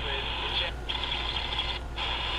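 C. Crane CC Pocket radio playing an AM broadcast with voices through its small built-in speaker. The sound is cut off above the treble and drops out briefly twice as the radio switches stations.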